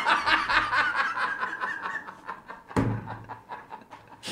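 Several men laughing hard at a joke, the laughter fading over the first two seconds, with a short louder burst about three seconds in.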